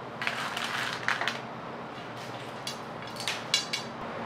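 Food being handled on a steel serving plate: about half a dozen short rustles and light crackles, as of garnish going onto the rice, over a faint steady hum.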